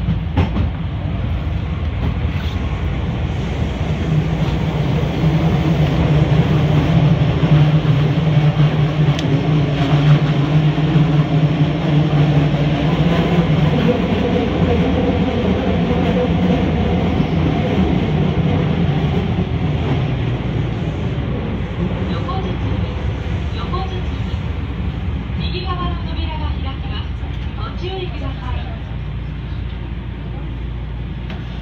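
Linear-motor subway train running through a tunnel, heard from the front car: a steady rumble of the running gear with a low motor hum that swells a few seconds in and fades after the middle as the train slows into a station. Short wavering high tones come in near the end.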